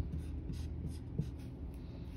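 Dry-erase marker writing on a whiteboard, a quick run of short scratchy strokes.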